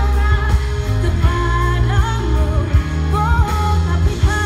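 A live pop band playing with a steady drum beat, bass guitar and keyboards, while a horn section of saxophone and trumpet plays the melody.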